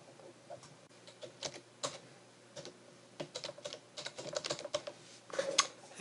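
Typing on a computer keyboard: a run of separate key clicks at an uneven pace, coming faster in the last couple of seconds.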